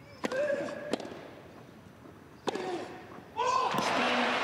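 Tennis balls struck by rackets in a rally on grass, heard as sharp pops: the serve about a quarter second in, then hits about a second and two and a half seconds in, and another just before the end. The first and third hits are each followed by a short vocal grunt. Voices and crowd noise rise in the last second.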